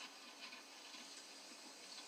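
Near silence: a faint, even hiss with no distinct events.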